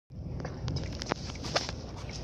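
Handling noise on a phone's microphone: a low rumble with scattered clicks and taps as the phone is moved about in the hand.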